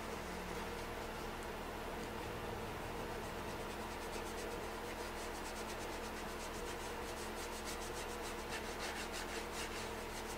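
Medium crescent stencil brush dry-rubbing paint into the corner of a painted tray, a faint scratchy swishing of quick repeated strokes, several a second, that begins about three seconds in and continues.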